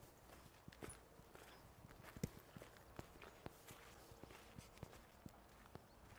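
Faint footsteps on a stony gravel track as a walker moves away, a scatter of soft clicks over near silence.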